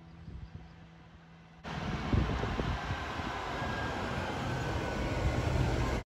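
A diesel route bus passing close by. Its engine rumbles under road and tyre noise with a thin whine, cutting in suddenly about a second and a half in after a quiet start.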